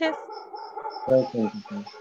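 A dog barking over a video-call connection: a few short, loud barks starting suddenly about a second in.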